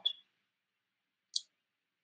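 A quiet pause holding one brief, high-pitched click just under a second and a half in.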